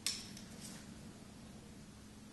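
A sharp clink of a bamboo-handled Chinese brush tapping a ceramic dish as it is reloaded with ink, followed by two fainter ticks, over a faint steady hum.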